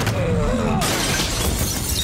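Glass shattering in a film fight scene's soundtrack: a sudden crash of breaking glass a little under a second in, its bright spray lasting about a second, after a wavering tone.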